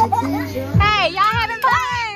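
Several children's high-pitched voices calling out excitedly, over background music with a low, repeating beat.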